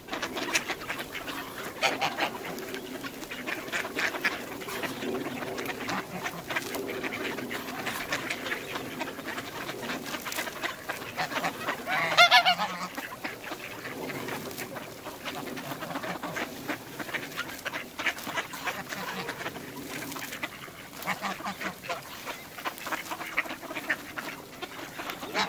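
A flock of mallard ducks quacking and chattering continuously as they feed, with one loud goose honk about twelve seconds in.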